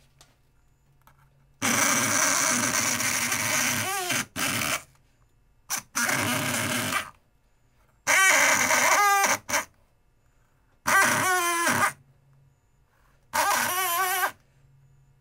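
Wendt electric lock pick gun buzzing as its needle hammers into pumpkin flesh to carve it. It runs in about six bursts of one to three seconds, with short pauses between them, and its pitch wavers and bends as it works.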